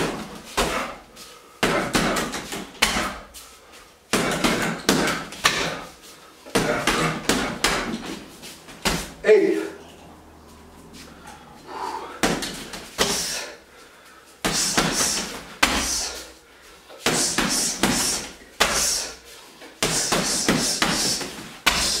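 Boxing gloves punching a hanging heavy bag in fast flurries of many hits. The flurries last one to three seconds each, with short pauses between them.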